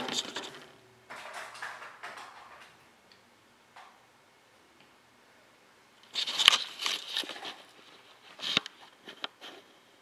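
Camera handling noise in a small room: rustling and rubbing against the microphone, loudest about six seconds in as the camera is picked up and aimed, followed by a few sharp knocks.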